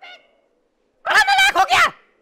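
A high, nasal, honking vocal cry about a second long, starting about a second in.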